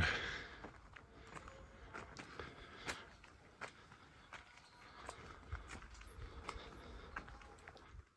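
Faint footsteps of a person walking uphill on a path of concrete slabs: scattered light clicks and scuffs at an uneven pace.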